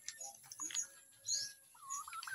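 Birds chirping: a few short, high chirps that drop in pitch, and a thin whistled note through the middle that turns wavering near the end.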